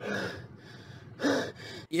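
Two sharp breaths, gasps, about a second apart; the second carries a slight voice.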